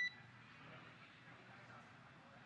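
A short electronic beep on the mission radio loop, ending just as a transmission closes, followed by faint steady hiss on the air-to-ground channel.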